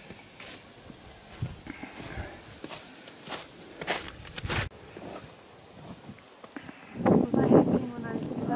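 Footsteps crunching over snow and frozen grass, a string of crunches that cut off abruptly about halfway through. A person's voice comes in near the end.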